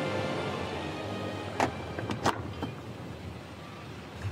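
Background music fades out in the first half-second. It leaves the low steady rumble of a small aircraft's cabin, with two sharp clunks about a second and a half and two and a quarter seconds in as the cabin door is unlatched and opened.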